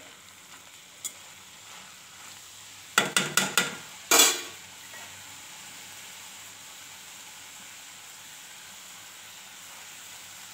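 Mustard greens and sweet corn sizzling softly in a kadhai. About three seconds in comes a quick run of metal knocks, then just after four seconds one louder ringing clang: a metal spatula striking the pan.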